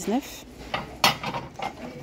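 White porcelain plates clinking as one is set back onto a stack on a store shelf: a few short clinks and clatters, the loudest about a second in.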